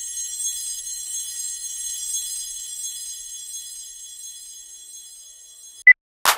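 A high-pitched ringing like a bell, held for about six seconds and slowly fading, followed by a short beep near the end.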